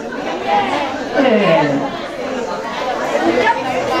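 Speech only: a man talking into a microphone, with other voices talking over it.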